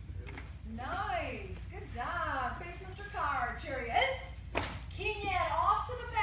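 A person talking indistinctly, with a few sharp taps or knocks, the clearest about four and a half seconds in.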